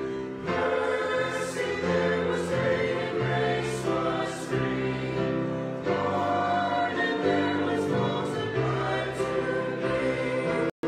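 Mixed church choir singing in harmony, in long held notes with the hiss of sung consonants now and then.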